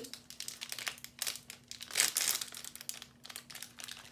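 A small wrapper being crinkled and torn open by hand, in irregular crackles that are loudest about halfway through.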